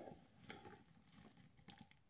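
Near silence with a few faint rustles and soft ticks: fingers tamping potting soil down around a freshly repotted begonia.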